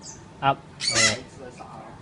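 African grey parrot calling: a short high falling whistle at the start, then a harsh, loud squawk about a second in.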